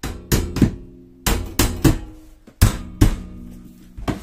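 Black steel wire shelf and pole of a joint rack being knocked, about eight sharp metallic knocks in three short groups, each ringing briefly, as the shelf is shifted on its pole.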